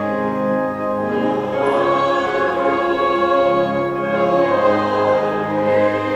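A congregation singing a slow hymn together in long held notes, with instrumental accompaniment.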